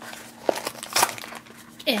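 Crinkling and tearing of a tightly sealed foil blind-bag packet being pulled open by hand, with two sharp crackles about half a second and a second in.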